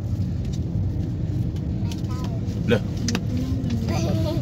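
Steady low rumble of a car's engine and road noise heard inside the cabin while driving, with a short spoken word near the end.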